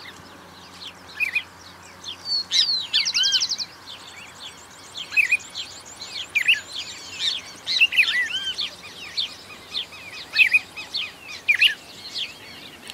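Several wild birds singing and calling: short arched chirps coming every second or so, with a fast high trill about three seconds in.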